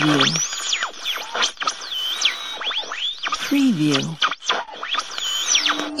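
N-Sons portable radio being tuned across the band: whistles that sweep up and down in pitch over a hiss of static as the tuning knob is turned between stations.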